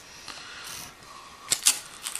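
X-Acto knife blade cutting fiberglass strapping tape against a wooden tabletop: quiet scraping, then a few sharp clicks near the end.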